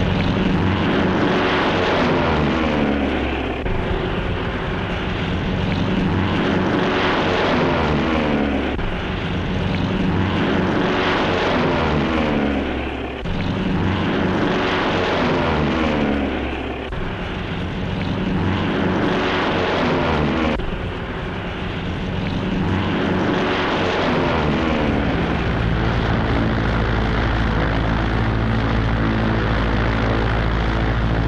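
Radial-engine propeller biplanes flying past one after another, each pass falling in pitch, about every four seconds. Near the end the passes give way to a steady low engine drone.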